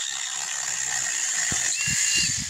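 Seesii PS610 battery-powered brushless mini chainsaw with a 6-inch bar, running and cutting through a dead branch with a steady, high-pitched buzz. Near the end, as the cut goes through, a thin whine rises over it and a few low knocks sound.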